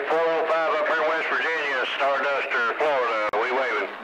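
A voice coming in over a CB radio receiver, talking without a break, with a faint low hum underneath.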